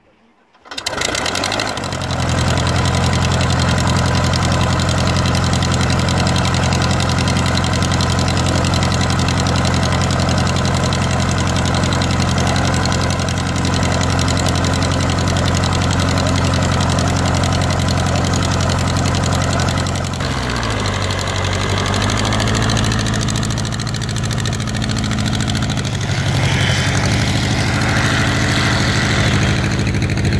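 Light aircraft piston engine on skis running steadily at idle on the ground after coming in about a second in. Around twenty seconds in, its note drops slightly lower.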